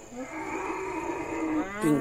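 A cow mooing: one long, steady call lasting about a second and a half.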